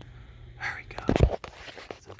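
Handling noise as a work light is set in place: a brief rustle, then a loud cluster of knocks and a thump about a second in.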